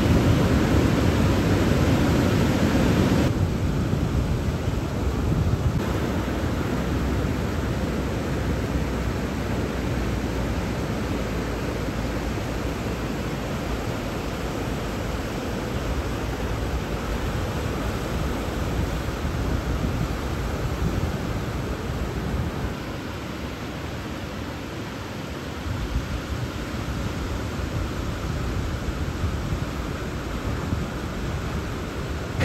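Ocean surf breaking along the shore: a steady rushing noise of waves, fuller and louder for the first three seconds or so, then even.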